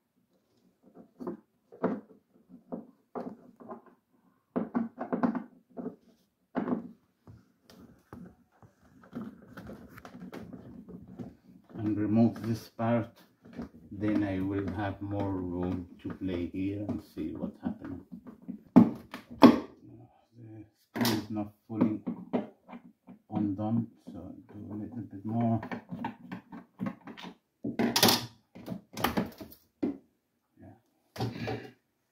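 Mostly a man talking, with a few sharp clicks and knocks from plastic fridge parts being handled as the damper cover is worked loose, the loudest two-thirds of the way through and near the end.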